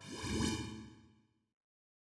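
A whoosh sound effect from a news channel's outro sting, swelling for about half a second and then fading out over the next second.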